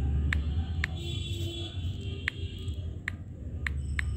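Key-press clicks of a phone's on-screen keyboard, about six taps at uneven spacing as letters are typed, over a steady low hum.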